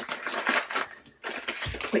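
Thin plastic packaging crinkling in irregular spurts as it is handled and unwrapped, with a soft thump near the end.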